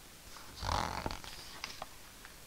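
A soft intake of breath from the narrator, followed by a few faint mouth clicks.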